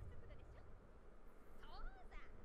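Faint, high-pitched voices of anime characters speaking, played quietly, with a few sliding pitched sounds near the end.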